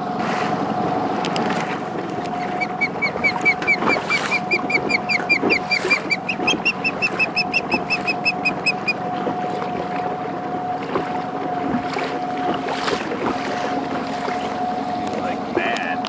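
An osprey calling: a rapid series of short, high whistled chirps, four or five a second, from about three to nine seconds in, stepping up in pitch midway. Beneath it a small outboard motor runs steadily.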